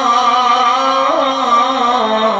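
A male Arabic religious chanter holding one long sung note in an ibtihal in praise of the Prophet, with a small ornamental waver in pitch about a second in.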